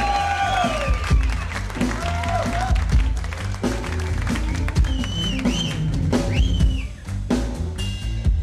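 Live blues band playing an instrumental passage on drums, bass, keyboards and electric guitar, with high notes bending up and down over a steady beat.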